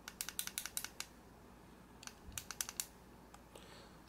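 Fire button of a Wismec Luxotic MF box mod clicked rapidly in two quick runs, one at the start and one about two seconds in: the five-click sequence that switches the mod off and on.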